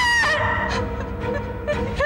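A woman's high-pitched scream breaking off about a quarter second in, then a steady held tone of dramatic background music; a fresh scream starts right at the end.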